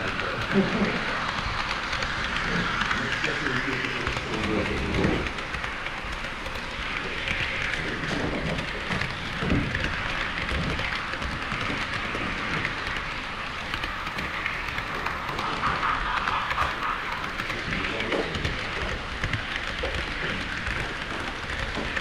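HO-scale model trains running past close by on Kato Unitrack: a steady rushing rumble of small metal wheels on the rails, with a few louder knocks.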